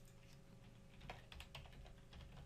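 Faint typing on a computer keyboard as a password is entered: a quick run of about six keystrokes in the second half.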